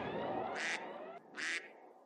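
A duck quacking twice, about a second apart, over the fading tail of a sound effect with rising sweeps.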